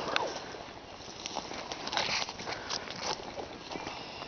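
Footsteps through dry leaf litter and brush, with twigs and branches rustling as they are pushed past: an irregular soft crunching and rustling.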